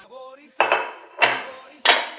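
Three sharp clatters of a metal spoon against a metal cooking pot, about half a second apart.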